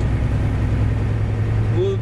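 Semi-truck cruising at highway speed, heard from inside the cab: a steady low engine drone under an even wash of road and tyre noise.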